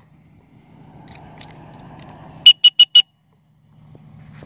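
Four rapid, loud electronic beeps, one steady high tone repeated in about half a second, about two and a half seconds in. They follow a faint noisy rush, and the sound cuts out briefly afterwards.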